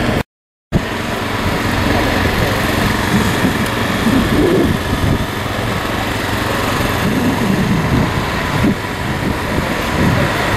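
Steady drone of a small engine over outdoor background noise, with faint voices around the middle and near the end.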